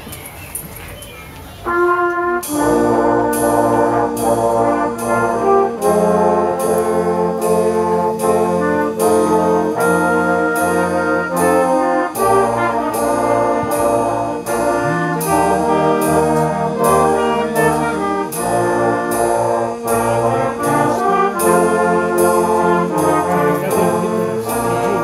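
Youth wind band of clarinets, saxophones and brass starting a piece about two seconds in and playing on at full volume, sustained chords over a moving bass line with a steady beat about twice a second.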